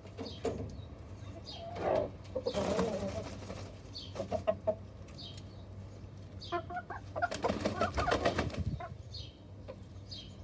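Chickens clucking in a wire-mesh cage, with two louder bursts of wing flapping, about two seconds in and again from about seven to nine seconds.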